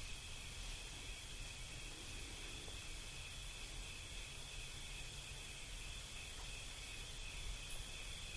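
Crickets chirring steadily, faint and high-pitched, over low background hiss.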